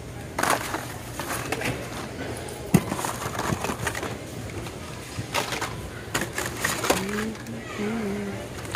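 Hot Wheels blister-pack cards rustling and clacking against each other as hands flip through them in a bin, in irregular bursts with one sharp click about three seconds in. A short hummed "mm" comes near the end.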